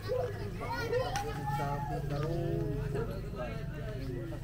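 Voices of people talking and calling out, including children's high-pitched voices, over a steady low hum.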